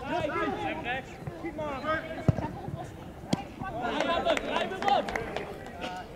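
Footballers' voices shouting and calling across the pitch, with a sharp thud of a ball being kicked a little past two seconds in, the loudest sound, and a lighter kick about a second later.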